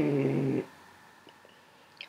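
A pet snoring: one low snore lasting about half a second.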